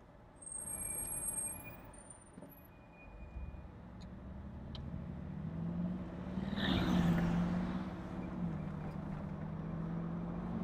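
Mercedes-AMG G63's biturbo V8 heard from inside the cabin: a low rumble builds from about three seconds in as the SUV picks up speed. It peaks in a low drone around seven seconds, then settles to a steady hum.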